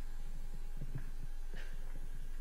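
Low, steady electrical hum, like a sound system's mains hum, with a few faint, soft knocks.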